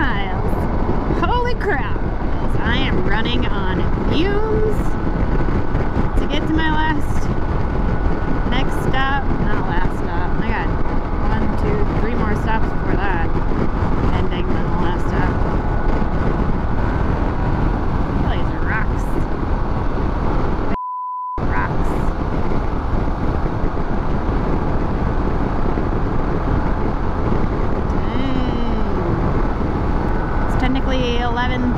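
Steady wind rush and road and engine noise of a Harley-Davidson Pan America motorcycle cruising at highway speed, heard at the rider's camera. About two-thirds of the way through, a short single-tone censor bleep replaces the sound for half a second.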